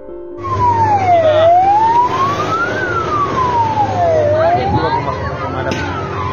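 Fire engine siren wailing, its pitch sweeping slowly down and up about every three seconds, over a background hiss.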